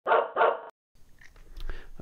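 A dog barks twice in quick succession, the barks ending abruptly in dead silence, followed by faint room noise.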